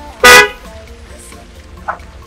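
A car horn honks once, a short, loud toot about a quarter second in, over quiet background music.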